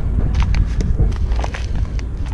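Paper bag of Sakrete concrete mix crinkling and crackling as a hand shifts it on a car's rubber cargo mat: a few short sharp crackles over a steady low rumble.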